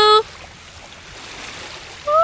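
Steady hiss of wind and calm sea water at the shoreline, with no distinct splashes. A loud, held, high-pitched call cuts off just after the start.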